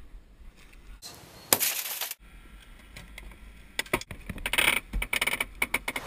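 Metal rescue equipment being handled as a car is stabilised: a short rushing burst about a second and a half in, then a run of quick metallic clicks and rattles over the last two seconds.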